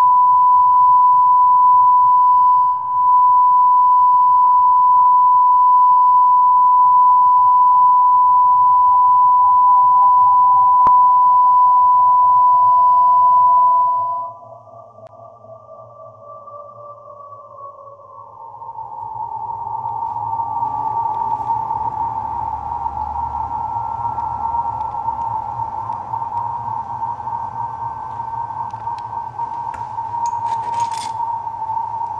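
Electronic soundtrack tone: a loud, steady, high beep held for about fourteen seconds that cuts off abruptly, followed by a quieter, slowly falling tone, then from about nineteen seconds a rougher, hazier sonar-like hum at nearly the same pitch.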